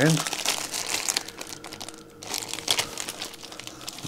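Clear plastic bag of electronic kit parts (transistors and capacitors) crinkling in irregular rustles as it is handled and turned over.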